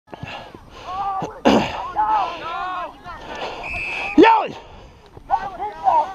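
Men's voices calling and shouting across a football field, with no clear words. The loudest call rises in pitch about four seconds in, just after a brief steady high tone, and there is a short rush of noise about a second and a half in.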